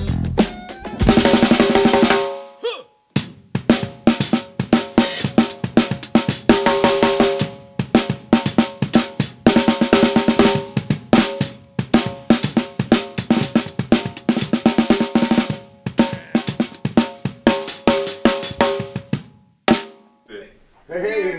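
A small drum kit played solo: fast snare strokes and rolls with bass drum and cymbal hits, the drums ringing at a steady pitch under the strokes. The playing breaks off briefly between two and three seconds in, then runs on and stops just before the end.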